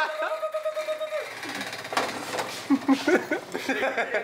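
A voice holds one long note for about a second, then a man's voice follows in indistinct, wordless vocal sounds, with a couple of sharp clicks partway through.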